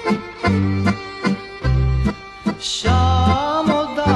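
Instrumental break of a Vlach folk song from eastern Serbia: an accordion-led band playing a melody over a steady alternating bass-and-chord beat. A wavering melody line comes in about three seconds in.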